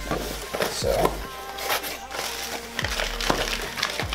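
Cardboard box flaps being pulled open and plastic packaging crinkling and rustling as items are lifted out, in a run of irregular crackles.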